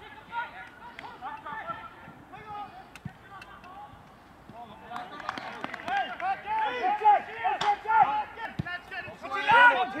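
Several footballers shouting and calling to each other across an open pitch during play, getting busier and louder about halfway through, with a few sharp knocks among the voices.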